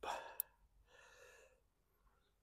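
A man's soft breathy sigh, an exhale of about a second, with a single faint click just before it.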